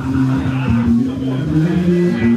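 Live rock band playing: electric guitar and bass riff stepping between a few low notes over a driving drum beat.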